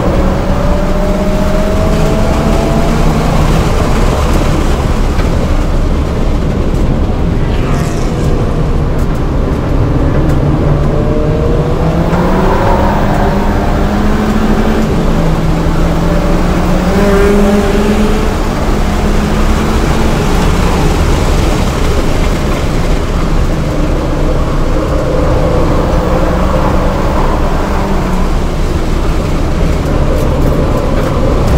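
A 2007 VW GTI's turbocharged 2.0-litre four-cylinder engine heard from inside the cabin while being driven hard. The engine note climbs under acceleration and drops back several times with shifts and lifts, over steady tyre and wind noise.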